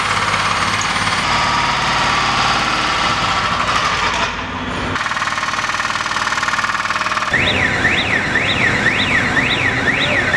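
Construction-site noise with a fast mechanical rattle like a pneumatic breaker. About seven seconds in it cuts to a warbling electronic alarm that rises and falls in pitch twice a second.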